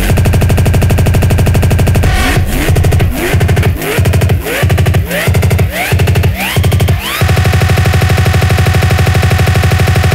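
Drum and bass from a vinyl DJ set, building up. A very fast, machine-gun-like roll opens the stretch. Then come about eight rising swoops, each roughly 0.6 s apart, and a little past two-thirds of the way through the dense roll comes back.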